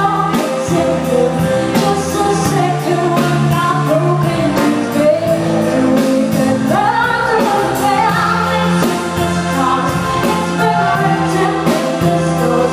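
Live pop band playing: a woman sings into a microphone over a drum kit keeping a steady beat of about four strokes a second and sustained electric guitar and backing notes.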